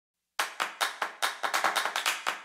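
Intro music opening with a quick run of sharp clap-like percussion hits, about five a second, starting about a third of a second in and quickening near the end.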